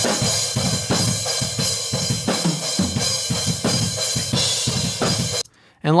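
Room-microphone recording of a metal drum breakdown, with kick, snare and cymbals hitting at a steady pace, played back EQ'd and through a CLA-76 compressor. It cuts off suddenly near the end.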